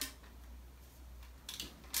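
Faint handling of a plastic vacuum extension tube over a low steady room hum, with a few light clicks about a second and a half in and again at the end.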